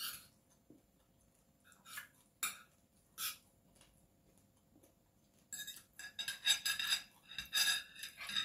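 Metal fork and spoon on a ceramic plate while eating: a few separate short clicks at first, then from about five and a half seconds in a quick run of scraping and clinking against the plate.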